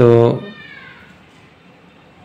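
A man's voice draws out one short word, then low room noise, with a faint falling squeak just after the word.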